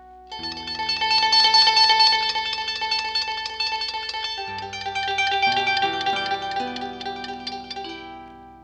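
A harp duo playing a pasillo: a fast stream of plucked notes over deep bass notes that move to new pitches several times in the second half, fading as the phrase closes near the end.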